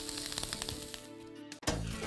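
A held music chord over a fading pan sizzle, then a brief drop-out and a sudden low boom about a second and a half in as a new music bed starts.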